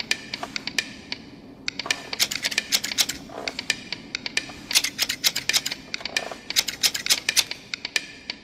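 Rapid, irregular sharp clicks in quick clusters with brief pauses, from an animated short film's soundtrack, over a faint low hum.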